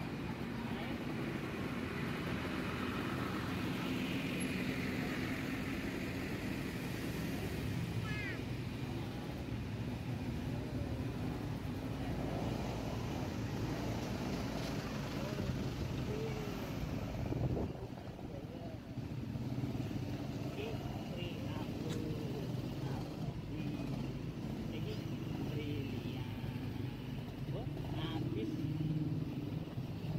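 Diesel engines of large tour buses running steadily at idle or crawling close by, with people's voices talking in the background.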